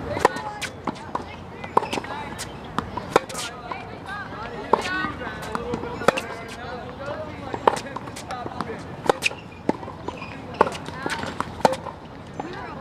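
Tennis racquets hitting balls and balls bouncing on an outdoor hard court during a baseline rally: sharp pops, the loudest about every second and a half, with fainter hits from neighbouring courts.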